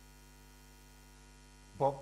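Low, steady electrical mains hum during a pause in speech, with a man's voice starting again near the end.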